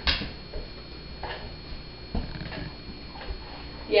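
A few soft knocks, the sharpest right at the start and fainter ones spaced about a second apart: a dog's paws stepping onto a low wooden perch board.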